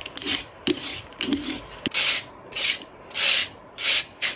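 Vegetable peeler scraping the skin off a white radish (daikon) in short strokes. From about halfway through, the radish is grated on a metal grater in louder, regular rasping strokes, a little under two a second.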